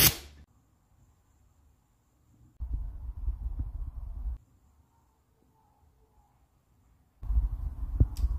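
Mostly dead silence, broken by about two seconds of low rumble starting a couple of seconds in. A second stretch of the same rumble returns near the end.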